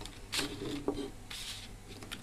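Faint rustling and scraping of hands moving insulated wires over a tabletop, in two short spells, with a small click a little before a second in.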